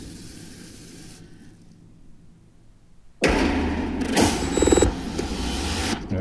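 Horror-trailer sound design: a fading noisy tail, a near-quiet gap, then about three seconds in a sudden loud noisy hit that carries on with two sharper hits a little over a second later.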